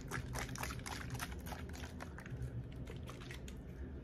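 An unopened 11.5-ounce aluminium can of non-carbonated juice drink being shaken by hand, the juice sloshing inside in rapid, uneven splashes.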